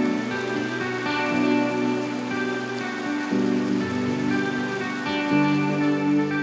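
Soft instrumental background music with sustained notes, its chord shifting about halfway and again near the end, over a steady rush of flowing water from river rapids.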